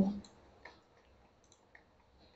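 A few faint clicks of a computer mouse, the first a little over half a second in, as the slide is advanced.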